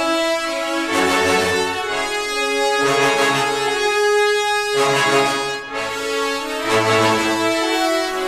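Sampled orchestral brass playback: horns and trumpets sound the melody and counter-melody in full sustained chords, with short brass stabs. The chords change about every second over low notes underneath.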